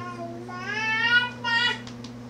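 A cat meowing twice: one drawn-out meow rising and then falling in pitch, then a short one near the end.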